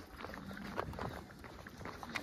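Footsteps on bare granite rock, a series of short scuffs and taps at a walking pace as the walker heads downhill.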